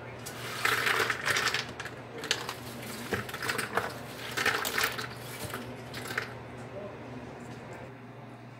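Dry snack mix of pretzels, Bugles corn snacks, peanuts and cereal pieces sliding off a metal baking pan and clattering into a large bowl as a hand sweeps it along, in uneven bursts that die down after about six seconds.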